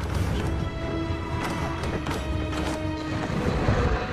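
Film soundtrack: an orchestral score with held tones, cut by several sharp hits that are the sound effects of giant ship-mounted crossbow bolts being fired at a dragon.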